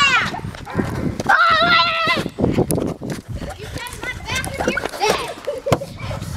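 Children running on grass: repeated thudding footfalls, with a child's high-pitched wordless yell about a second and a half in and fainter voices later.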